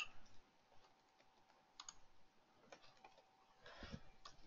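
Faint computer keyboard keystrokes: a handful of isolated taps spread through the seconds.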